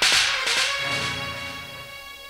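A dramatic sound-effect sting: a sudden loud crash followed by a ringing tone that fades away over about two seconds.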